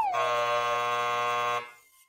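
A game-show style buzzer sound effect: one steady, low buzz lasting about a second and a half that cuts off suddenly, the 'wrong' signal for a bad result as the meter's needle rests on BAD. The tail of a falling sliding tone fades out under its start.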